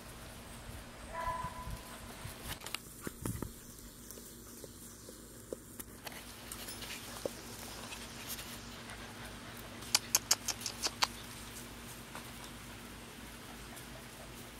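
Puppies in a pen: one gives a short whine about a second in, and around ten seconds in comes a quick run of sharp clicks, about eight of them, the loudest sounds here.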